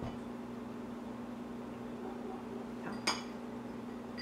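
A steady low hum, with one light, sharp clink of a glass treat bowl being touched about three seconds in.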